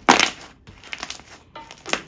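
Thick white slime squeezed and pressed between the hands, giving crackly popping bursts as air is squeezed out. The loudest comes just after the start, with smaller pops about a second in and near the end.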